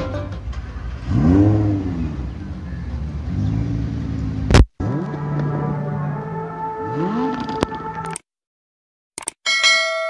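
Lamborghini Huracán V10 engine revving in several blips, each rising and falling in pitch, with a sharp click about four and a half seconds in. The sound cuts out, and a bright ringing chime follows near the end.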